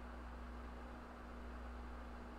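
Quiet room tone: a steady low hum with a faint thin higher hum over light hiss, with nothing else happening.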